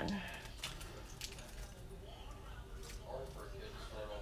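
A small plastic jewelry packet being handled after being ripped open, with a few faint clicks and crinkles in the first second or so as the earrings are shaken out into a hand.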